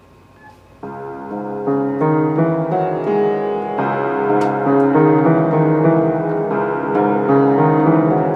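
Old piano with a cracked soundboard and terrible tuning, played in a slow, dark improvised piece that starts about a second in. Low notes are held under a continuous run of higher notes, and the playing grows louder after about two seconds.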